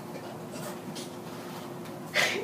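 Quiet room tone in a small room: a steady hiss with a faint, constant low hum.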